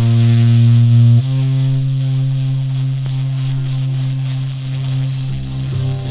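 Spiritual jazz ensemble music: a loud, sustained low droning note steps up slightly about a second in, with a busy higher texture above it. Deeper moving bass notes come in near the end.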